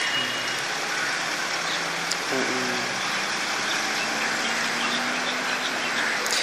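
Steady road traffic noise with a faint low engine hum.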